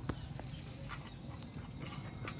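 A few light, sharp taps on a wooden plank floor, over a low steady hum.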